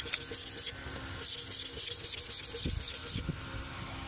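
Sandpaper on a rubber backing pad rubbed by hand over a bamboo piece in quick, even strokes, about ten a second. There is a short bout, a brief pause about a second in, then about two seconds more. It stops near the end, where a few soft knocks follow.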